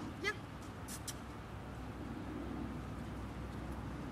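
A dog-training box clicker sounding a sharp click-clack, two clicks in quick succession about a second in, over a low steady outdoor rumble. In clicker training this marks the moment the dog did right.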